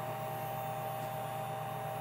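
Small electric slot car motor running steadily on a bench power supply, a steady hum. It is being run so the fresh oil works into it and clears out acid flux after the pinion was soldered on.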